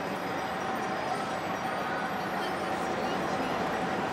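Busy city street ambience: a steady wash of traffic noise, with a faint steady tone held through most of it.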